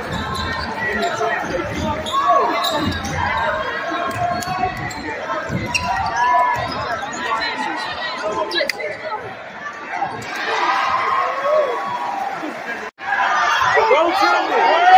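Basketball being dribbled and bouncing on a gym's hardwood floor during live play, with many crowd voices calling out in the echoing hall. The crowd gets louder near the end.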